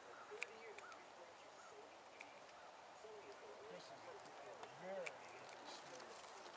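Near silence, with faint distant voices coming and going and a few soft clicks, the sharpest about half a second in.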